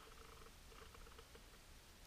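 Near silence: faint room-tone-like hum with barely audible rustles.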